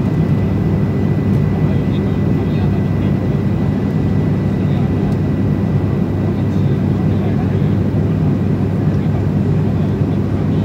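Cabin noise of a turboprop airliner in flight: the engines and propellers make a steady drone with a low hum and a faint thin whine above it.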